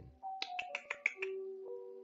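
A short electronic jingle from a language-learning app: a quick run of clicks with short ringing notes, settling on a lower, longer note near the end.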